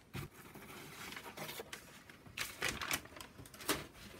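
Cardboard and paper being handled and shifted on a cutting mat: a series of rustles and light knocks, the sharpest one near the end.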